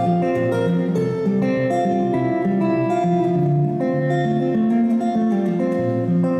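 Steel-string acoustic guitar played live in an instrumental passage: picked notes and chords over a moving bass line, ringing on steadily.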